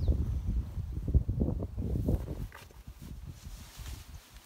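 Low rumble and soft irregular knocks of wind and handling noise on a handheld phone microphone outdoors, dying down after about two and a half seconds.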